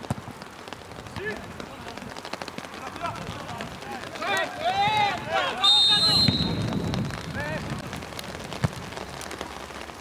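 Players shouting across an open football pitch, then a referee's whistle: one short, shrill blast about six seconds in. A single sharp knock, like a ball being kicked, follows near the end.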